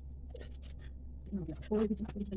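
Short scratchy rustles of hands and a comb working through hair, over a steady low hum, with a woman's voice briefly near the end.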